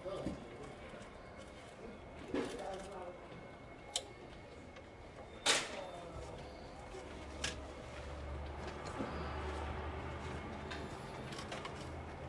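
Scattered sharp clicks and knocks of a hand tool on the metal and plastic of a car engine's throttle body as it is refitted after cleaning. There are about five, the loudest about halfway through, over a faint low hum in the second half.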